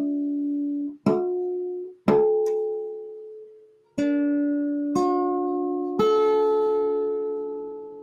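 Kite guitar strumming six chords, most about a second apart, each ringing and fading; the last one is held longest. Its finely spaced frets put the notes close to the harmonic series, so the chords sound near just intonation and blend smoothly.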